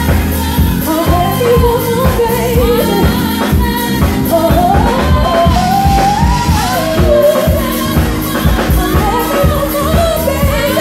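A singer performing a pop song over a band or backing track with a steady beat. The voice glides between notes and holds some with vibrato.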